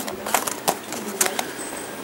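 The plastic packet of a pack of cotton puffs crinkling as it is handled, with several sharp crackles spread across the two seconds.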